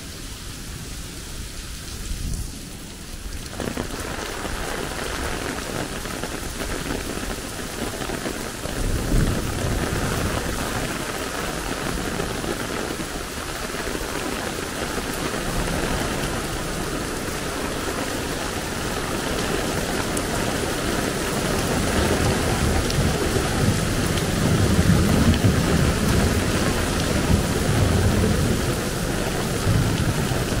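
Heavy rain pouring onto pavement, street and overhead awnings in a steady dense hiss that grows heavier a few seconds in. Low rumbles swell under it in the middle and again near the end.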